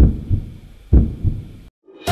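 Heartbeat sound effect: two slow low double thuds, lub-dub, about a second apart, then a sudden cut to silence near the end.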